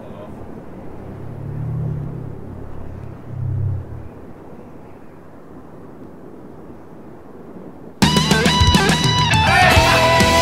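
A rock music video's soundtrack: a quiet, dark opening with two low swells, then about eight seconds in the full band comes in loudly all at once, with distorted electric guitar and drums.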